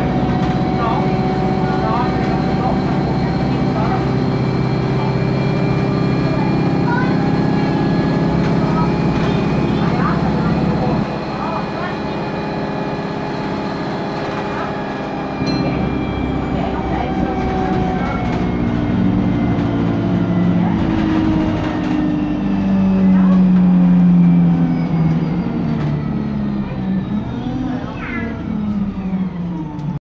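Alexander Dennis Enviro200 single-deck bus heard from inside the saloon, its diesel engine driven hard with a steady drone. The drone drops back about eleven seconds in, picks up again a few seconds later, then falls slowly in pitch over the last third.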